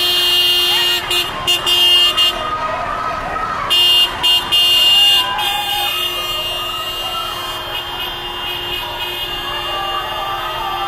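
Car horn honking: one long blast, then a string of short toots and longer blasts that stops about five seconds in. The voices of a crowd of marchers carry on underneath.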